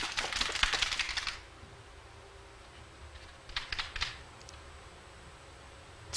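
Carom billiard balls clicking against each other and the cushions as they roll out after a missed three-cushion shot: a quick run of sharp clicks in the first second or so, then a short cluster of clicks about three and a half seconds in.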